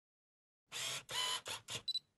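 Camera mechanism sound effect on a logo intro: four short whirring bursts, then two quick clicks near the end with a faint high ring.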